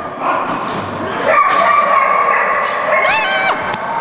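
A dog's high-pitched, drawn-out yelping and barking: one long held yelp in the middle, then short rising yips near the end.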